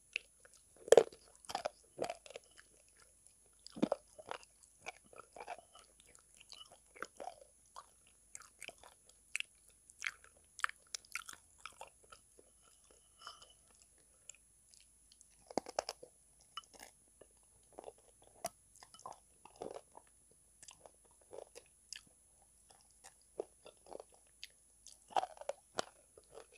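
Close-miked eating of a thick brown paste with pieces of calabash chalk (ulo) in it, taken from the fingers: wet, sticky chewing with crunches and irregular mouth clicks. It comes in bouts, louder about a second in, at about four and sixteen seconds, and near the end.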